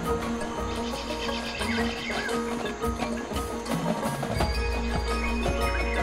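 Marching band show music led by front-ensemble mallet percussion, with bell-like struck notes over sustained chords. A deep low bass tone comes in about two-thirds of the way through.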